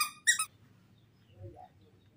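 Baby monkey giving two short, high-pitched squeals in quick succession at the start, then falling quiet.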